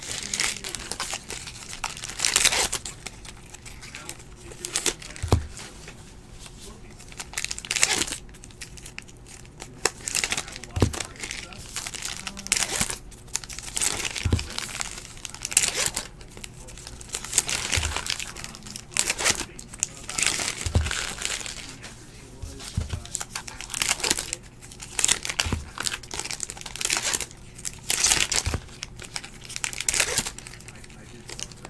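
Trading-card pack wrappers being torn open one after another, crinkling and tearing every two to three seconds, with a short soft thud every few seconds as cards are set down on the table.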